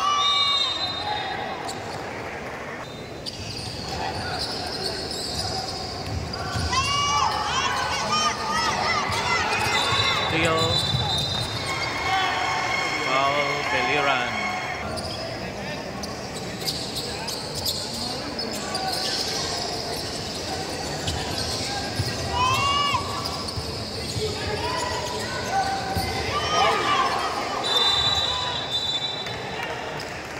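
Indoor basketball game on a hardwood court: the ball bouncing, sneakers squeaking in short chirps again and again, and crowd chatter echoing in a large gym. A referee's whistle sounds briefly at the start and again near the end.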